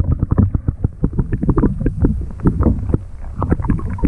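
Water sloshing and knocking against a camera held under the lake surface, heard muffled as a dense run of irregular low thuds and gurgles.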